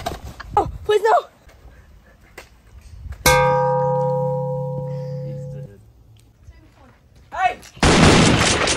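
Children shouting briefly, then a sudden ringing musical tone of several steady pitches that fades over about two and a half seconds and cuts off abruptly, an edited-in sound effect over the foam-bat hit.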